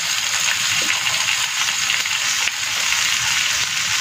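Chopped onion, tomato and green peas frying in oil in a non-stick frying pan, a steady sizzle.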